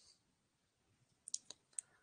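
Near silence with a few faint, short clicks in the second half.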